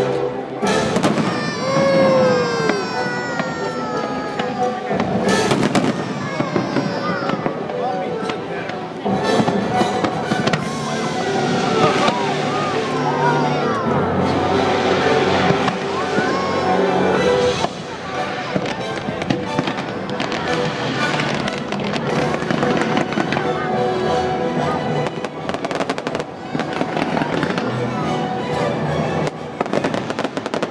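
Fireworks bursting in quick, repeated bangs with flame bursts over the water. The show's orchestral score plays underneath throughout.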